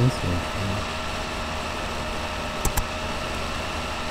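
Steady background hum and hiss. It opens with a brief snatch of a voice, and two quick clicks come close together near the end of the third second.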